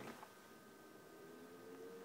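Near silence: room tone with a faint, steady, thin hum.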